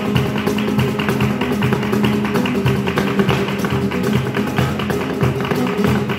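Live flamenco music: an acoustic guitar and a cajón, with dense, rhythmic tapping from the dancer's shoes on a dance board.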